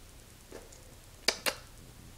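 Quiet room with two sharp clicks about a fifth of a second apart, a little past halfway, as a dog moves about at its crate on a tiled floor.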